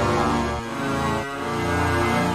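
Arturia Pigments 4 software-synth string patch, a creepy cello-like sound built from comb filtering and samples, playing sustained notes through a multiband compressor. The held notes change pitch twice, about half a second in and again past the one-second mark.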